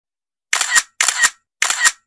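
Camera-shutter sound effect played three times, about half a second apart, each a short double snap.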